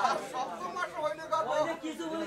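Several people talking at once, with overlapping voices.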